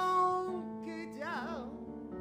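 A live band playing, with a singer holding a long note with vibrato over guitar and sustained instrument chords, then a short wavering vocal phrase about a second and a half in.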